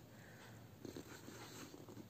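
Faint scratching of a pen writing on notebook paper, with a few short strokes about a second in.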